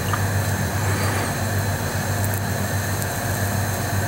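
Steady running noise inside a moving car: a constant low engine hum under even road and wind hiss.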